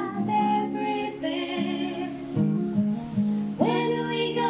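Acoustic folk band playing, heard on a live home tape recording: strummed acoustic guitar under a wavering melody line, with a new phrase coming in strongly near the end.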